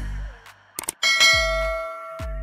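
Beat music with a deep bass note fading out in the first half-second; about a second in, a bright bell chime strikes once and rings on, the loudest sound. The chime is an on-screen notification-bell sound effect.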